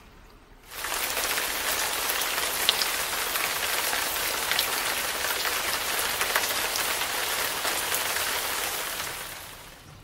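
Steady rain falling on a wet, puddled flat roof, a dense hiss dotted with drop ticks. It starts abruptly about a second in and fades out near the end.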